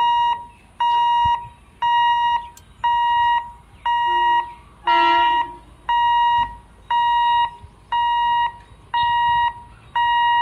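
Railway level-crossing warning alarm beeping steadily, about once a second with each beep half a second long, the signal that the gate is closing for an approaching train. A brief different call overlaps one beep about five seconds in.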